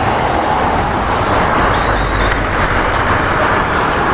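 Wind rushing steadily over the camera microphone while riding a Bajaj CT110X motorcycle, its small single-cylinder engine running underneath, with road and traffic noise.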